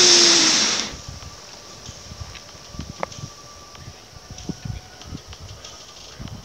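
A loud in-breath close to a headset microphone, ending about a second in. The breath is then held, leaving only faint background, with one click about three seconds in.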